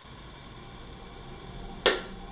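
Low steady room background, then a single short, sharp hit near the end: an added sound effect marking a magic orb appearing.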